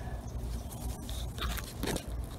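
Katuk leaves and stems rustling and scraping against the microphone as it is pushed into the foliage, with two brief louder brushes near the end.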